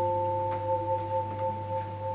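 Vibraphone notes ringing on with the sustain held: three long, pure notes sounding together, the lower two fading out partway through while the top note keeps ringing.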